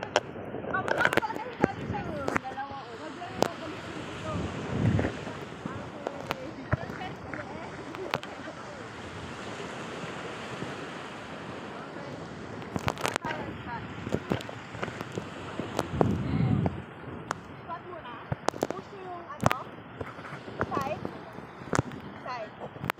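Outdoor beach ambience: a steady wash of wind and surf noise, with distant voices and scattered sharp clicks at irregular moments.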